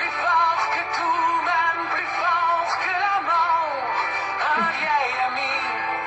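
A song playing: a sung voice over instrumental backing, its melody gliding up and down in phrases.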